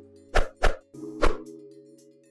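Short logo-animation jingle: three sharp percussive hits over a held synth chord that fades away.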